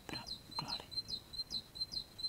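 A small songbird chirping in a quick series of short, high notes, about five a second.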